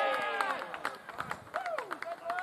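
Cricket players shouting on the field as the batters run between the wickets, with a sharp knock of bat on ball and several short clicks. Two short rising-and-falling calls come near the end.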